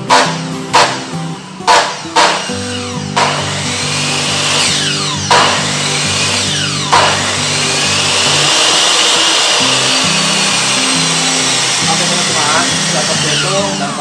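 Makita miter saw's brushed motor, fresh carbon brushes fitted, switched on in about six short blips, then run longer and finally held on for several seconds before spinning down with a falling whine. Test run after the brush replacement.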